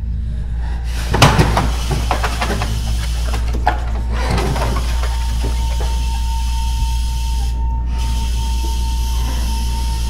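Film sound design: a steady low drone under a quick cluster of knocks and clatter about a second in, a couple more knocks a few seconds later, then a thin, steady high ringing tone that enters about halfway and holds.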